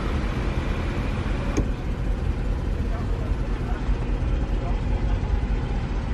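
Mercedes-Benz C63 AMG's V8 idling steadily, heard from inside the cabin, with a single faint click about a second and a half in.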